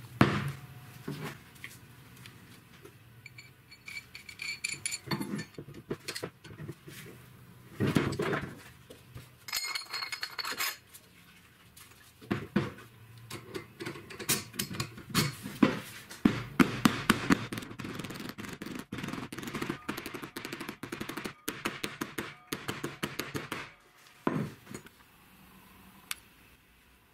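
Steel tube and bearing parts handled and fitted together on a wooden workbench. A knock as the tube is stood on the bench, metal clinks with short ringing tones, then a long run of rapid clicking and rattling as the shaft and bearing assembly is worked into the tube.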